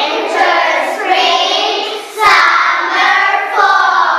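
A group of young children voicing English words together in unison, in phrases about two seconds long with a short breath between them.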